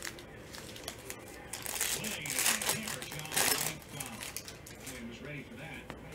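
Foil wrapper of a Panini Prizm football hobby pack crinkling and tearing open. The crackle is loudest for about two seconds in the middle, then eases off.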